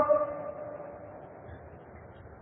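The end of a man's long, held vocal note, one steady pitch fading away over about the first second, followed by a faint steady hiss.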